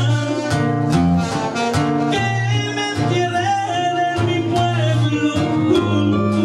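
Live band playing loud Latin dance music: a singer over bass, guitar and drums with a steady beat.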